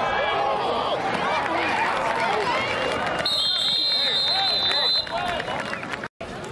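Crowd voices shouting and cheering at a football game. A little past halfway, a referee's whistle sounds one steady high blast for about a second and a half, blowing the play dead.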